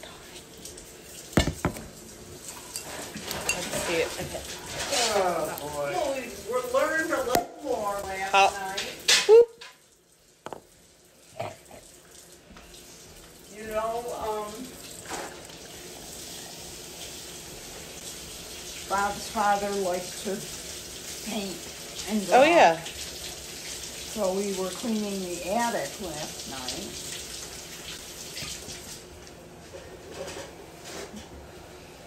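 A foaming sparkling drink is poured from a glass bottle into a stemmed glass and fizzes, around the middle. A woman's voice comes in short stretches between the sounds of handling the bottle and glass.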